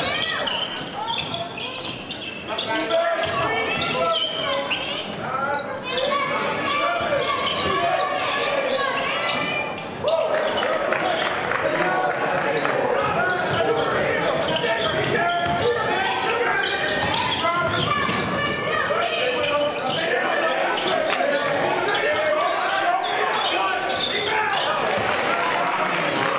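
Basketball dribbled on a hardwood gym floor during live play, with voices of players and spectators going on throughout, echoing in a large hall.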